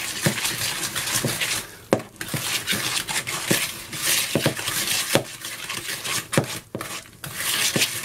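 A metal balloon whisk beating a thick butter, sugar and egg cake batter by hand in a mixing bowl: irregular clicks and taps of the wires against the bowl over a continuous wet scraping.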